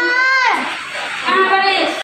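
A young child's high voice speaking in a drawn-out, sing-song way: one long held syllable that drops off about half a second in, then another short phrase near the end.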